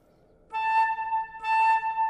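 Concert flute sounding one steady high note with some breath noise. The note begins about half a second in, dips briefly and swells again. The player has drawn his jaw back to lower the angle of the air stream so that the air goes into the flute.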